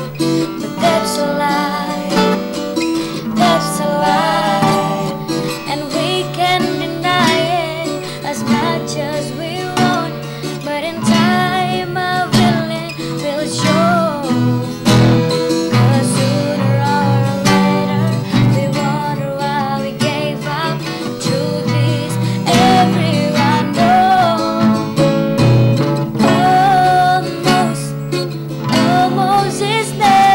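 Acoustic guitar strummed in chords, with a voice singing along to it.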